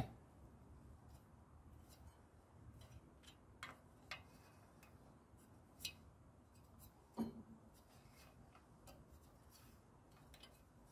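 Near silence broken by a few faint, spaced-out clicks and light knocks from a small ratchet wrench tightening the engine cooling-fan bolts in a crosswise order, so the fan runs true without wobbling.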